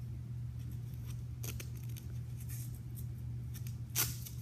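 Cloth boxing hand wrap rustling as the last turn is wound and its velcro closure pressed down, with a few soft crackles and a sharper click at the end. A steady low hum runs underneath.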